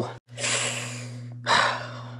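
A man's long, breathy exhale lasting about a second and fading away, then a shorter breath in.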